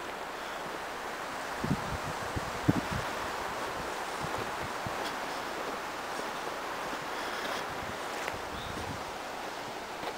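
Steady rushing of wind through the trees and across the microphone, with a few short, low thumps about two to three seconds in.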